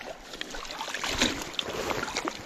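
Water splashing irregularly as a hooked brook trout thrashes at the surface of a small creek while it is reeled in, with some wind on the microphone.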